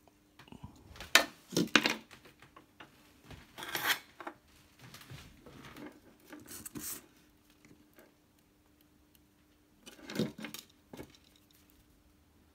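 Scattered light clicks and taps of a soldering iron and a metal pick against a Telecaster's metal control plate and blade-switch terminals while a wire is soldered on. A faint steady hum runs underneath.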